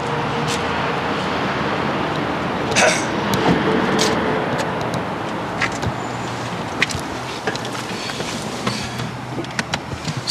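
Clicks and knocks of a person climbing into a car's driver's seat, over a steady rushing noise.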